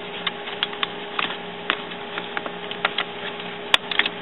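Refill ink cartridges being pressed down into the cartridge carriage of an Epson WorkForce printer: a series of small plastic clicks and taps, with one sharper click near the end as a cartridge snaps into place. A low steady hum runs underneath.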